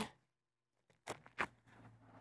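Very quiet, broken by two short faint clicks about a third of a second apart, a little over a second in, over a faint low hum.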